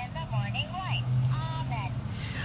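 Plush toy bear playing a recorded high-pitched voice through its small built-in speaker, over a steady low hum.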